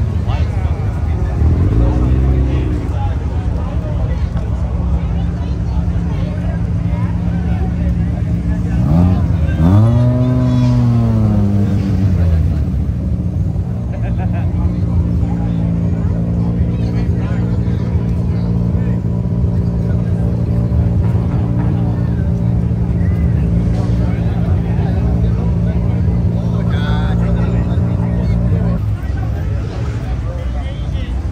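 Car engines revving hard: two rising-and-falling rev sweeps, the louder one about ten seconds in, then an engine held at a steady high note for about fifteen seconds before cutting off near the end, as a car does a burnout that sends up tyre smoke.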